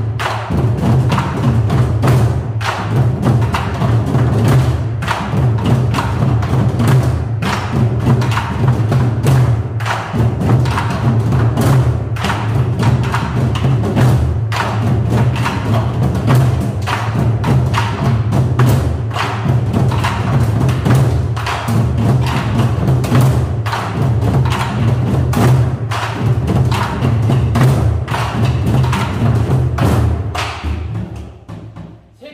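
A group of nanta students drumming together with sticks in a fast, steady rhythm, many strokes a second, over a backing music track.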